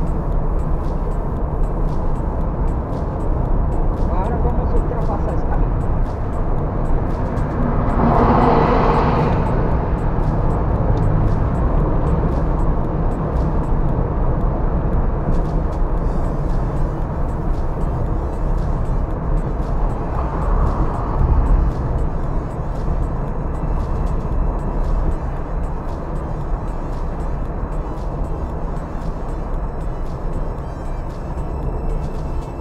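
Steady road and engine rumble inside a moving car's cabin. About eight seconds in, a loud rush swells and fades as an oncoming truck goes by, with a second, weaker rush later on.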